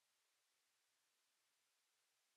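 Near silence: only a faint, even hiss.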